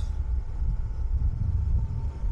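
Suzuki V-Strom motorcycle under way at road speed: a steady low rumble of wind on the microphone over the engine running.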